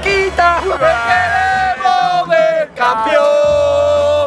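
A man singing a football fan's chant loudly, holding long drawn-out notes.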